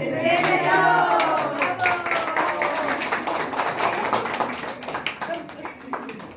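A small group clapping their hands in rhythm, with a woman's voice drawn out over the first couple of seconds. The clapping thins out near the end.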